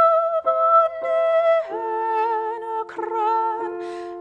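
A woman singing a slow German art song with vibrato, accompanied by sustained grand piano chords; a new chord enters under the voice about a third of the way in. This is the song's opening, on ordinary rooted chords, before it moves into augmented chords.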